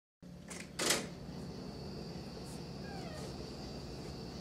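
A room door being opened, with a sharp click about half a second in and a louder knock of the latch and door about a second in. After that comes a steady low room hum with a thin high whine, and a few faint short squeaks around three seconds.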